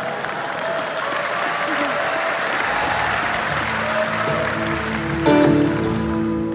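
Audience applauding, with a few voices over it. About three seconds in, a band starts a low sustained chord, and near the end a loud struck chord comes in as the song begins.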